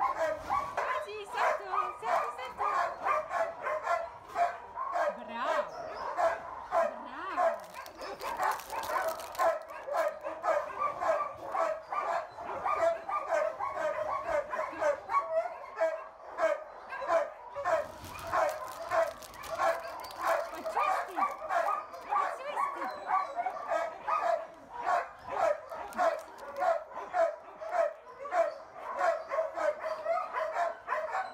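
A dog barking over and over, a steady run of about two to three barks a second that keeps going without a break.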